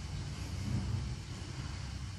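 Low, steady background rumble of room noise with no distinct clicks or knocks.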